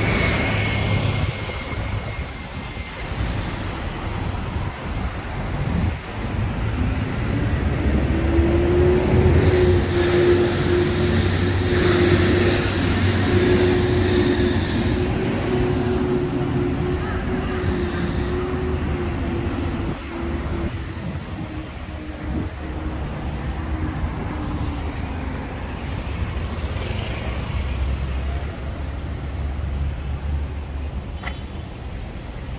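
City road traffic: cars and buses running past with a continuous low rumble, and a steady engine drone that rises in the middle and fades out after about twenty seconds.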